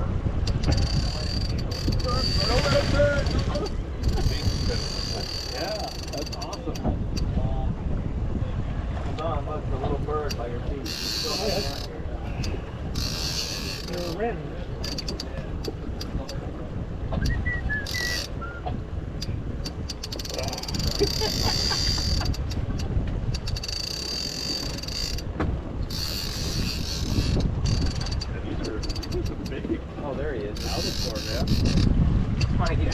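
Wind rumbling on the microphone, with repeated short bursts of high whirring from a fishing reel being cranked as an angler pumps the rod against a hooked fish.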